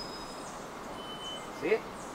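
Black-faced solitaire singing: a thin, high held whistle, then a lower held whistle about a second in. This is the song locally called the 'squeaky door' or 'rusty gate' bird.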